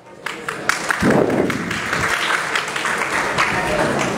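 An audience applauding, a dense patter of many hands clapping that starts a moment in and carries on steadily, with voices mixed in.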